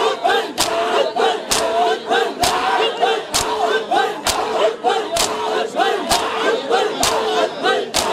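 Crowd of mourners performing matam: open hands slap bare chests in unison, with a sharp beat about every second and lighter slaps between. Loud group chanting runs under the slaps.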